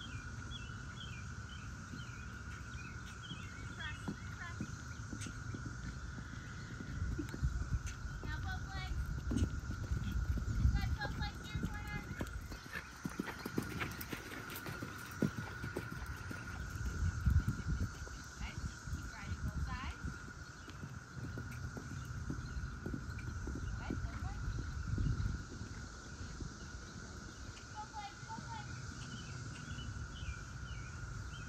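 A pony's hooves thudding on the sand of a jumping arena as it canters around the course, coming in several spells and loudest a little past halfway, when it passes close by.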